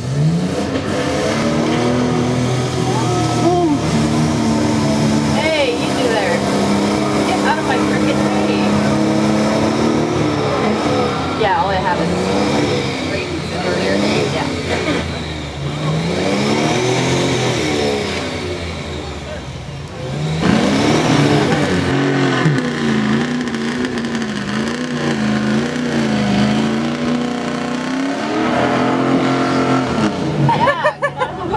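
Mud bog truck engine running hard at high revs as the truck drives through a mud pit, its pitch rising and falling with the throttle. About two-thirds of the way in the level jumps with a fresh burst of throttle, and the engine note then wavers up and down.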